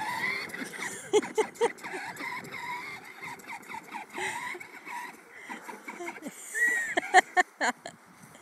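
Battery-powered children's ride-on quad driving over grass, its small electric motor and gearbox whining steadily, with a few sharp knocks about a second in and again near the end.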